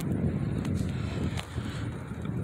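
Steady low outdoor background noise with a few faint clicks.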